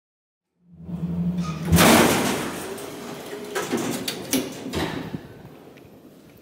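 Elevator car humming steadily, then its doors sliding open with a loud rush about two seconds in that fades away, followed by a few footsteps on a hard stone floor.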